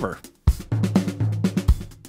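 Superior Drummer 2's groove player playing a sampled drum groove on the Vintage Rock kit, starting about half a second in when the play button is clicked: a steady pattern of sharp drum hits.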